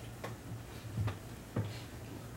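A low steady hum with three short soft knocks, the second and third the loudest.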